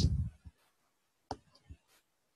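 Two short computer mouse clicks a little over a second in, the second one quieter.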